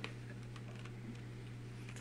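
Faint computer-keyboard typing, a few light clicks, over a steady low hum.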